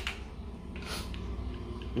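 Faint handling of a spinning reel against a fishing rod while it is being fitted: a click at the start and a short rustle about a second in, over a low steady hum.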